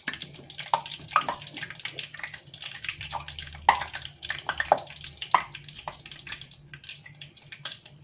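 Batter-coated artichoke pieces frying in moderately hot oil in a stainless steel pot: a steady sizzle full of irregular crackles and sharp pops.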